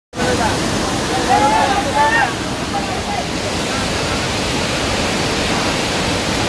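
Steady rush of a waterfall and its stream in muddy flood. Voices call out over it during the first three seconds.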